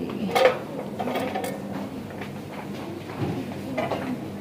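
Shop background: a steady low hum with a few scattered light clicks and knocks, the loudest about half a second in.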